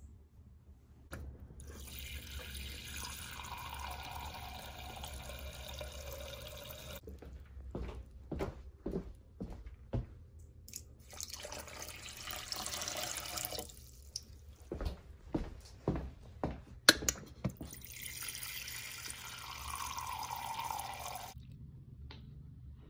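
Three spells of running water: water poured from a glass measuring cup into a stainless steel bowl of sugar, and the cup refilled at a refrigerator water dispenser, its pitch rising as it fills near the end. Clinks and knocks of glass and metal come between the pours, one sharp knock the loudest.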